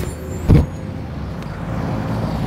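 Motor traffic: a steady low engine rumble, with one short thump about half a second in.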